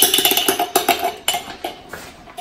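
Metal spoon clinking and scraping against a glass salsa jar: a quick run of ringing taps that thins out after about a second and a half.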